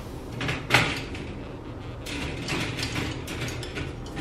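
A round glass disc set down on an expanded-metal wire rack: one sharp clink about three-quarters of a second in, then lighter clicks and scraping as the glass is shifted on the metal mesh.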